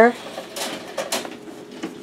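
A few faint scrapes and light rattles of a wire rabbit cage as a handful of parsley is pushed through the mesh.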